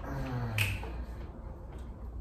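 A person's low hum, falling in pitch, with a single sharp click about half a second in.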